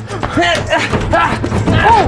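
Short wordless vocal shouts and grunts of excitement, several in quick succession, over background music with a steady bass.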